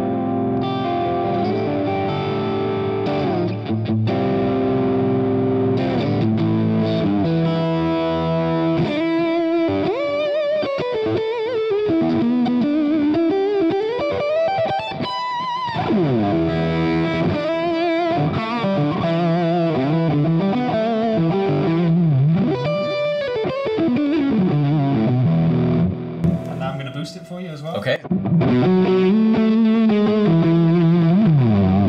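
Distorted electric-guitar lead played through a Hughes & Kettner Grandmeister Deluxe 40 tube amp on its lead channel: held notes, string bends and vibrato, with a short break near the end.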